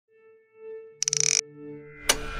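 Electronic logo sting: a steady synthesized tone swells, then a short stuttering glitch burst about a second in is the loudest part, and the tone carries on more quietly.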